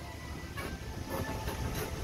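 Ride noise from an open-sided electric shuttle buggy rolling along a paved street: a steady low rumble of tyres and road, with a few faint rattles.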